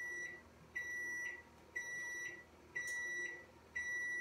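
Microwave oven beeping: a single high electronic tone about half a second long, repeated about once a second, five times. It is the microwave's alert that a heating cycle has finished.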